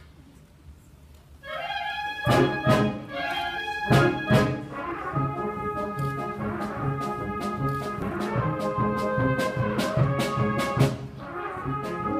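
Wind ensemble playing a march: after a brief hush, it comes in about a second and a half in with loud brass chords over regular drum and cymbal strokes, with heavy accents near the start.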